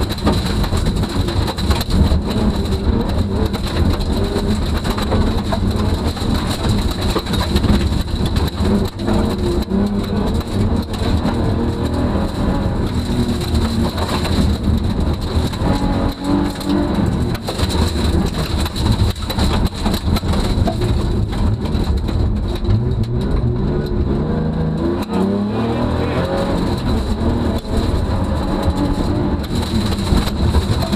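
BMW E36 325's straight-six engine revving hard, rising and falling through the gears, heard from inside the car's cabin at rally pace, with gravel and stones rattling against the underbody.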